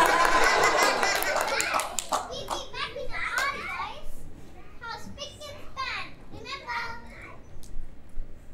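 Children's voices: a loud jumble of voices and sharp clatter that dies away over the first two seconds, then children talking or calling out in short, high-pitched bursts at a lower level.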